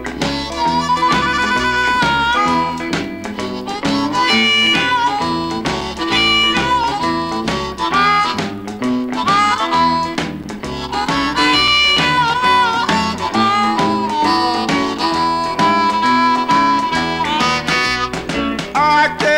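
Blues harmonica solo with bent, sliding notes over a steady rhythm of guitars, piano and drums: an instrumental break between sung verses in an early-1960s blues band recording.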